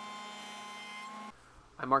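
Jointer running with a steady whine, cutting off abruptly about a second and a half in.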